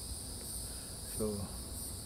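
A steady, high-pitched chorus of calling insects.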